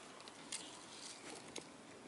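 Faint handling sounds: a few light clicks and soft rustles as small hard candies are shaken from a packet into a hand.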